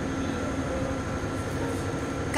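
Steady mechanical rumble of a river tour boat's engine running, mixed with an even hiss of wind and water.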